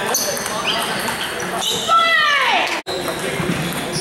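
Table tennis balls clicking off paddles and tables in a busy gymnasium, with a murmur of voices. About two seconds in comes a loud squeal that falls in pitch.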